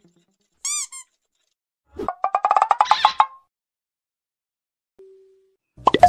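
Intro sound effects for an animated YouTube logo: a short pitched chirp-and-pop about a second in, then a quick run of ticks rising in pitch for about a second and a half, and a brief low beep near the end.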